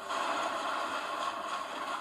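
Anime episode audio picked up from a playback speaker: a steady rushing, scraping noise of action sound effects.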